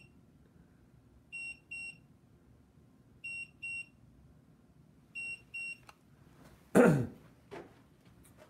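An electronic beeper sounding pairs of short high beeps, three pairs about two seconds apart, then a loud short sound falling in pitch near the end.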